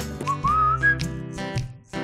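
A short whistled phrase that wavers and rises in pitch, over light background music with held chords. The music dips away near the end.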